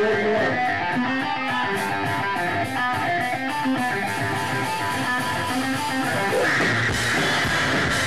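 A live stoner-metal band playing loud, steady electric guitars with drums. About six and a half seconds in, the guitars thicken into a denser, brighter wall of chords.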